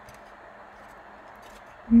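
A pause with only a quiet, steady hiss of room tone; a woman's voice starts up right at the end.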